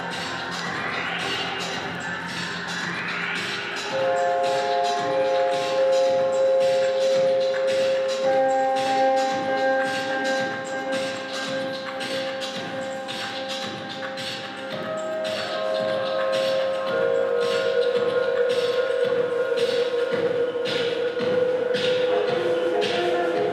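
Live rock band playing with electric guitar: long held notes over a steady beat. A few rising sweeps come at the start, and the music grows louder about four seconds in.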